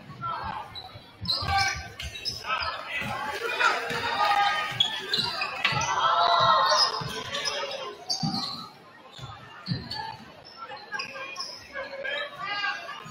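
Basketball dribbled on a hardwood gym floor, a series of bounces at irregular spacing, with voices calling out in the gym, loudest in the middle.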